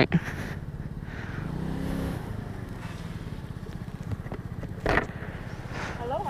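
A 125cc scooter's small single-cylinder engine idling with a steady fast pulse as the scooter creeps forward through a drive-thru lane. A short, sharp burst of sound cuts in about five seconds in.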